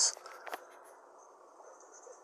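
Faint steady background hiss with a thin, steady high-pitched whine, and one faint click about half a second in.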